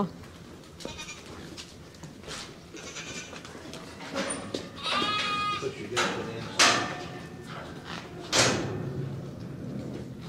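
Angora goat bleating, one wavering call about five seconds in and a fainter one before it, amid sharp knocks and thumps as the goats are handled, the loudest knocks coming late.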